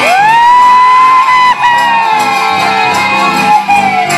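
A long, high-pitched shout over a live folk band with accordions and bass guitar. The voice sweeps up, holds for about three seconds with a short break halfway, then slowly slides down.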